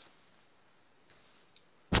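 Faint room tone, then near the end a single sharp, loud knock from the camera being jolted and tipping over.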